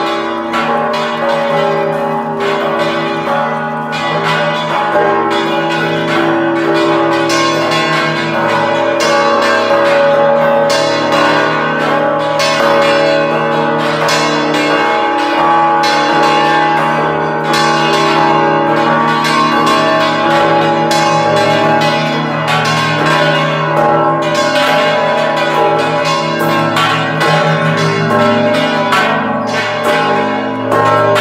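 Church bells of the Basílica de Zapopan ringing a fast festive repique: several bronze bells of different sizes are struck by their clappers, worked by hand on ropes, in a dense, unbroken rhythm, the many tones overlapping and ringing on.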